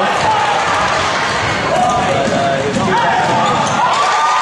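Basketball dribbled on a hardwood gym floor during a fast break, with voices of players and spectators calling out in the hall.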